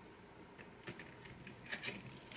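Faint, scattered light clicks and taps of wax pastel crayons being handled and pulled from their metal tin.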